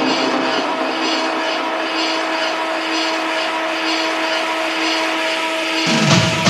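Techno breakdown: the kick drum and bass drop out, leaving a held synth tone over a dense, noisy synth wash. The bass comes back in near the end.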